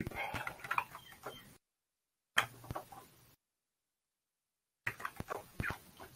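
Computer keyboard typing and clicking in three short runs of quick clicks, with dead silence between them.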